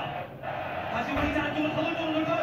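Indistinct background speech: voices talking, with a light crowd murmur.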